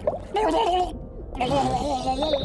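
A cartoon character's wordless vocal sounds made with her hands clamped over her mouth, in two wavering stretches with a short break about a second in.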